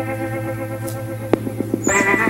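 Background music: a held chord that wavers slightly. About two-thirds of the way in, a sharp click and a quick run of short notes break in, and a new held chord starts near the end.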